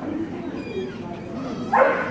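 A dog gives a short, high whine and then one loud bark near the end.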